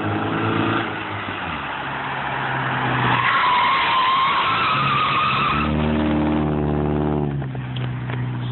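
A stock automatic 1993 Honda Civic's tyres squealing in a front-wheel-drive drift, a steady screech from about three seconds in that stops short before six seconds. The car's engine runs before the slide and pulls on steadily after it.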